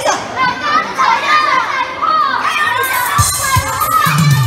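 A crowd of children shouting and squealing excitedly in a large, echoing hall, many high voices overlapping, with a couple of low thuds near the end.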